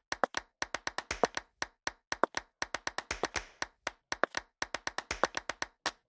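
A quick, uneven run of short sharp clicks and taps, about five a second, with silence between them.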